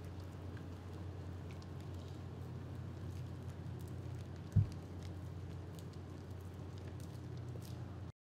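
A steady low hum with a faint pattering hiss over it, and a single dull thump about four and a half seconds in.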